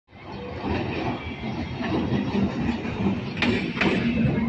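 Indian suburban electric multiple-unit (EMU) local train running past at speed, a steady rail rumble that builds over the first second. Near the end its wheels knock twice over rail joints.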